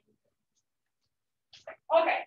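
Near silence, then near the end a short, loud pitched sound from a person's voice.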